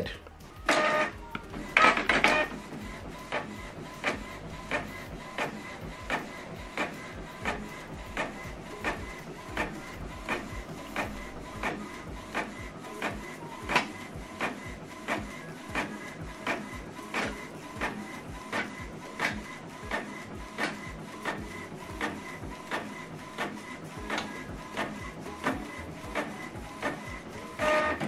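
Canon PIXMA MG3600-series inkjet printer printing a page double-sided, its mechanism ticking steadily about three times every two seconds. There are two louder clunks about one and two seconds in.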